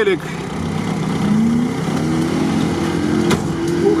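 Mercedes G500's V8 engine revving as the G-class pushes through deep swamp mud: after a steady rumble, the engine note rises in pitch from about a second in and then holds high.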